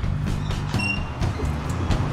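Background music with a steady bass line, over which the stainless steel smoker door's latch clamp is released and the door swung open, with a brief high metallic ring a little under a second in.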